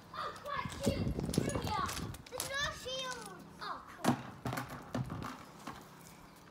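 Young children's playful shouts and squeals, short rising and falling calls one after another, with a few sharp knocks, the loudest about four seconds in.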